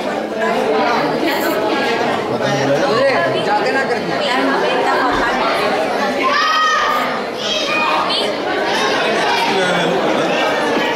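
A group of people chattering at once, many voices overlapping with no single speaker standing out.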